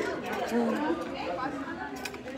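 Indistinct chatter of several voices in a busy indoor public space, with no words standing out.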